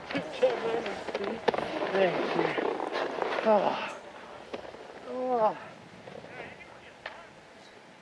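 Excited voices shouting and whooping over one another, with a few sharp knocks among them. A falling whoop stands out about five seconds in, and then it goes quieter.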